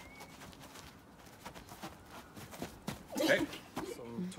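Feet stepping and shuffling quickly on a grass lawn as two players dodge each other in a footwork drill, a run of soft irregular footfalls, with a short vocal sound about three seconds in.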